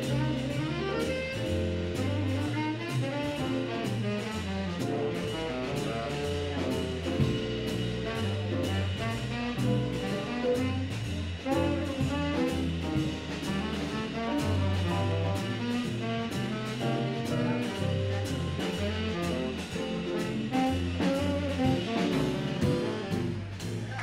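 Tenor saxophone playing a jazz solo over a big band rhythm section, with an upright bass line moving note by note underneath and drums keeping a steady beat.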